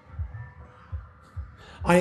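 Laughter in the room after a joke: a string of irregular low thumps close to the microphone, over a faint steady hum.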